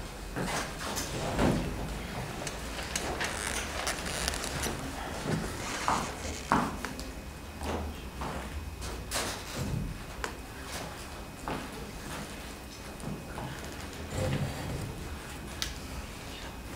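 Scattered knocks, clicks and rustles of musicians getting ready: a metal music stand being adjusted and a chair taken at the piano, with footsteps on a wooden floor.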